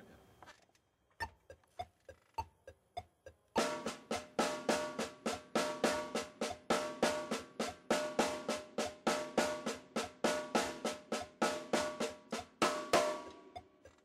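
Snare drum played with sticks: an inverted paradiddle rudiment, single and double strokes mixed in a repeating pattern, played at an even pace for about nine seconds. A few soft taps come first, and the playing stops about a second before the end.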